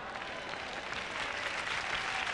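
Large congregation applauding, the clapping swelling slightly.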